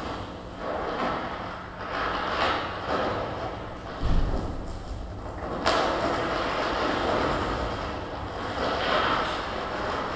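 Amplified harsh noise from contact-miked materials: rough scraping and rubbing swelling and fading in waves, with a low thud about four seconds in and a sudden sharp hit just before six seconds.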